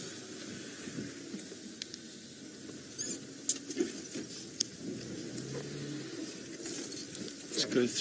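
Open safari vehicle driving slowly off-road through bush, with a scratchy rustling and a few sharp clicks and knocks in the middle.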